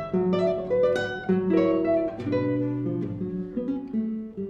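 Two acoustic guitars playing together, a string of plucked notes and chords that change a few times a second.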